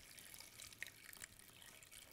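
Faint trickle of water poured in a thin stream from a glass measuring cup onto cubed sweet potatoes in a slow cooker, with a few tiny drips.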